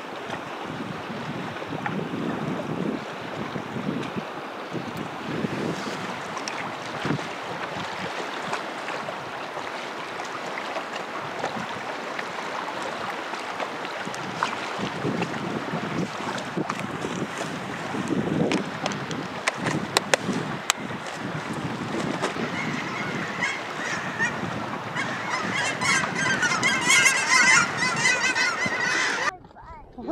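Steady rush of river water and wind on the microphone, with a few sharp clicks about two-thirds through. Over the last several seconds geese honk repeatedly.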